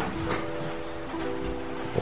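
Background music: soft held notes, changing to a new chord about a second in.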